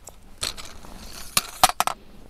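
Aluminium Manfrotto 190X tripod legs being opened: the flip-lever leg locks and tubes giving three sharp clicks close together in the second half, over a faint hiss.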